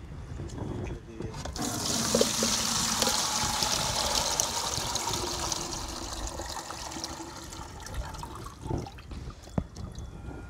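Beetroot liquid poured from a bucket through a plastic strainer into another bucket: a steady splashing pour that starts about a second and a half in, then thins to a trickle near the end.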